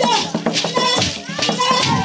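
Traditional singing voices over shaken rattles keeping a steady beat.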